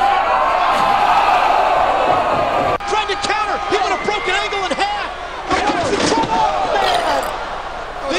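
Pro wrestling broadcast audio. A loud arena crowd cheers, then after a cut, commentators talk excitedly over crowd noise, with a heavy slam as a wrestler is driven through a table.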